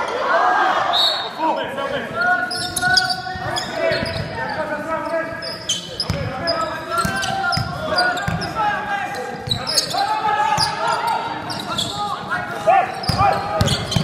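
Basketball game on a wooden court in a large hall: a ball bouncing repeatedly on the floor, with players' and onlookers' voices calling out throughout.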